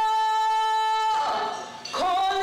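Vocal music: a singer holds one long steady note that ends about a second in, then the sound dips briefly before the singing picks up again at the very end.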